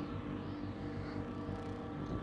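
Dark ambient noise drone: a steady low rumble layered with sustained tones, and a faint high tone that wavers up and down.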